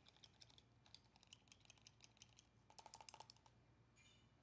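Faint, rapid clicking and tapping of a small paintbrush knocking against the sides of its rinse cup as it is swished clean, busiest and loudest about three seconds in.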